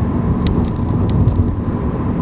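Car driving on a wet road, heard from inside the cabin: a steady rumble of engine and tyres. A scatter of short sharp ticks or rattles starts about half a second in.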